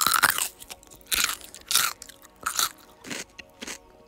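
A person bites into a whole unpeeled potato with a loud crunch, then chews it, with a crunch about every half second.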